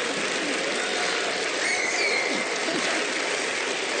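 Studio audience applauding and laughing: a steady, rain-like wash of clapping with faint voices in it.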